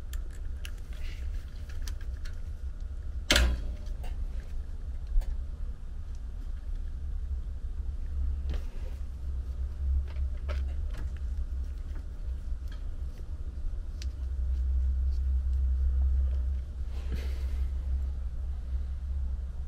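Air handler's blower running with a low, uneven rumble, its blower wheel loose on a failed hub so the unit vibrates hard. A sharp click about three seconds in.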